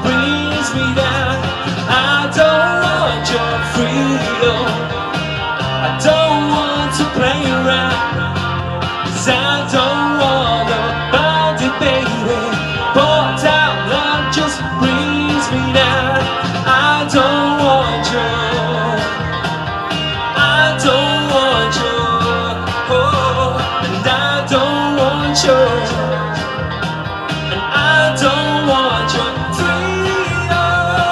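A male singer singing live into a microphone over loud backing pop music with a steady beat and a moving bass line.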